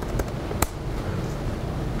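Steady room noise with a low hum, and two sharp clicks in the first second: keystrokes on a laptop keyboard as a web address is typed and entered.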